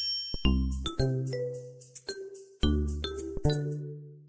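Background music of bell-like chime notes over deep bass notes, each note struck and then ringing away.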